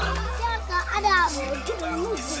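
Children's voices chattering over background music with steady low sustained notes.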